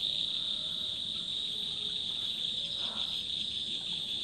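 Crickets chirping in a steady, unbroken high-pitched trill, a night-time insect chorus.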